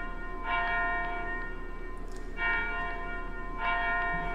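A small bell with a clear, high ring struck three times, about half a second in, about two and a half seconds in and near the end, each strike ringing on and fading before the next.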